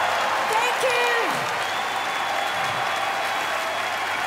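A large arena crowd applauding and cheering just after a song ends, with a short shout rising and falling about a second in.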